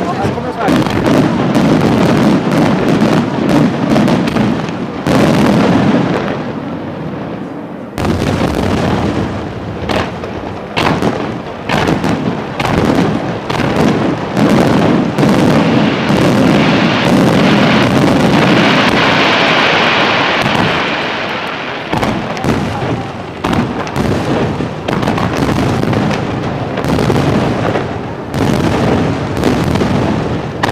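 Aerial fireworks shells bursting in rapid, overlapping volleys, a continuous barrage of booms and sharp reports. A little past halfway the bursts give way briefly to a steady crackling hiss before the reports pick up again.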